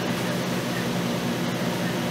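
Steady background hum with a low buzz and even hiss, unchanging throughout, like electrical mains hum or a fan's hum in the room.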